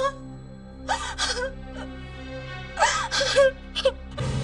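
A woman crying and sobbing aloud in two outbursts, about a second in and again near three seconds, over a low, steady background music drone.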